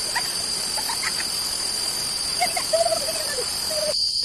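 Forest ambience: a steady high insect drone over a hiss, with a few short bird chirps and a wavering call in the second half.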